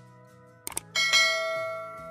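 Subscribe-animation sound effect: two quick clicks, then a bright notification-bell chime about a second in that rings on and slowly fades.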